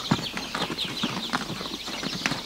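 A herd of horses galloping, an irregular drumming of many hoofbeats, with a high, fast chirping alongside.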